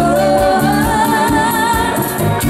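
Live bachata band playing, with a singer holding one long note with vibrato over the accompaniment and a pulsing bass.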